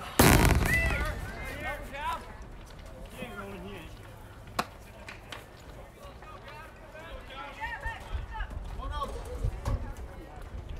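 A baseball struck by the bat: one loud, sharp crack right at the start that dies away within about half a second, fitting a foul ball. A shorter, fainter click follows a little past the middle.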